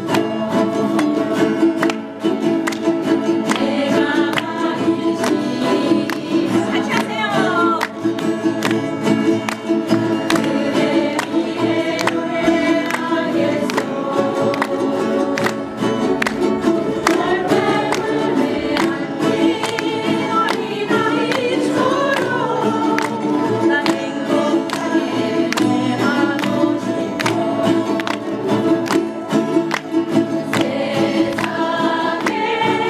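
A ukulele and acoustic guitar ensemble strumming a song, with a group of voices singing together and the audience clapping along.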